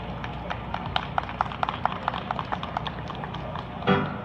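Dancers' footsteps on the stage platform: a quick, uneven run of sharp taps and knocks, several a second, while the dancers move into place.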